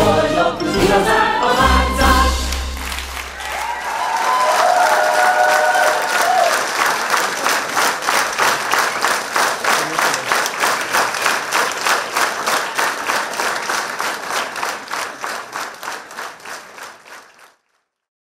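A stage musical number with singing and music ends about three seconds in. A theatre audience then claps together in a steady rhythm, and the clapping fades out near the end.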